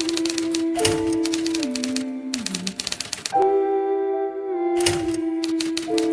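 Typewriter keystroke sound effect: rapid runs of key clacks in several bursts with short pauses between them. Under them runs music of sustained notes that step down in pitch.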